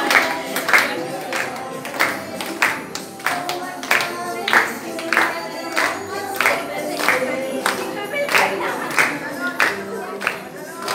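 A song being sung with a group clapping along in time, about two claps a second, the claps as loud as the singing.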